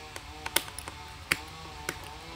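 A few sharp clicks of a small screwdriver working the screws of a plastic cassette shell.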